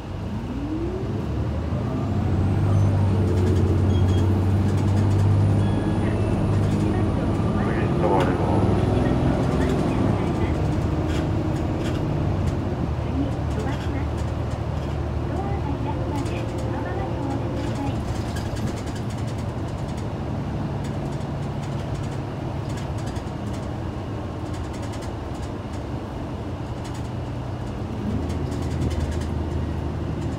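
Hino Blue Ribbon II city bus with automatic transmission, heard from inside the cabin, its diesel engine pulling hard as the bus accelerates: a rising tone in the first couple of seconds, then a deep, loud drone that settles into a steadier run and builds again near the end.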